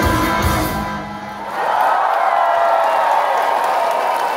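Live rock band with electric guitars and drums playing the last bars of a song, the music dying away about a second in. From about a second and a half in, a large concert crowd cheering.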